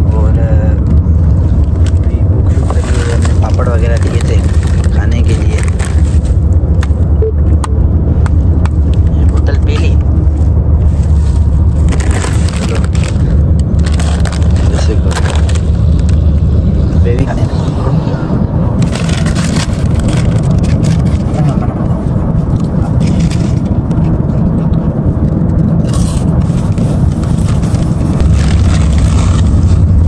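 Car cabin on the move: a steady low rumble of road and engine noise, easing somewhat past the middle, with a crisp packet crinkling in bursts several times.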